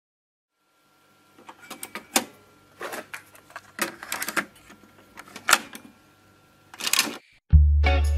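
A compact cassette being loaded into a cassette deck: a series of plastic clicks and clacks from the tape well and door, over a faint steady hum. A louder clatter comes near the end, and after a brief gap reggae music with heavy bass starts.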